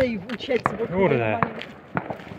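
A man's voice calling out, with one drawn-out call falling in pitch about a second in, and a few sharp clicks scattered through.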